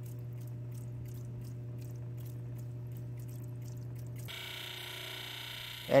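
Electric motor of a lapidary grinding machine running with a steady low hum while an opal is ground on a wet wheel. A little past four seconds the sound turns brighter, with a hiss and a higher whine, as the stone moves to the 600 wheel.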